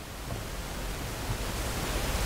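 Steady hiss of room tone in a large hall, with a low hum underneath and no distinct sounds.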